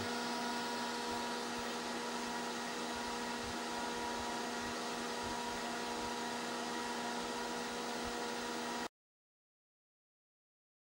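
Small computer fan running steadily, a hum with a faint whine over hiss, as it drives a test-rig anemometer. It cuts off abruptly near the end.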